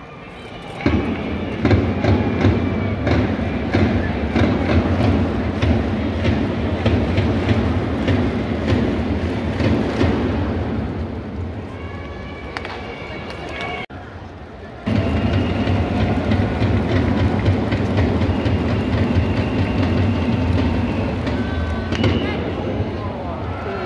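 Japanese baseball outfield cheering section: a large crowd chanting in unison to a steady beat of drums and trumpet phrases from the organised cheering group (ōendan). It starts loud about a second in, breaks off briefly around fourteen seconds, then resumes.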